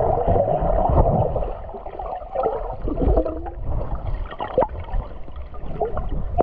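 Muffled underwater sound of flowing creek water gurgling against a submerged camera, with several short dull knocks scattered through it.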